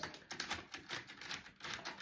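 A run of faint, rapid, irregular clicks and taps, as of a hand fiddling with a small object.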